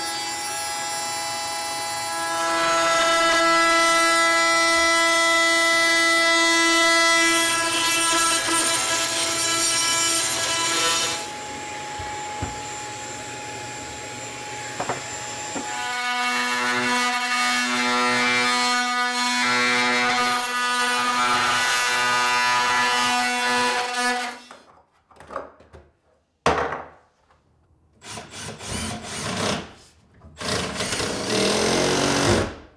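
Jigsaw cutting outlet-box openings through a plywood cabinet back. A steady motor whine for about eleven seconds, a quieter stretch, then a second, lower-pitched cut of about eight seconds that stops abruptly.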